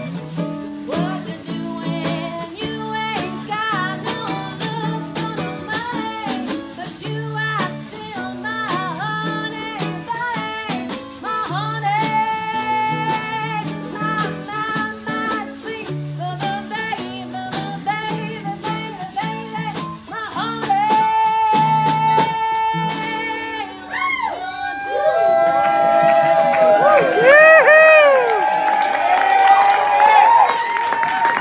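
Live acoustic band: acoustic guitar and a second plucked string instrument picking and strumming under a woman's singing voice. In the last third she belts long held notes with wide vibrato, the loudest part, as the song builds to its close.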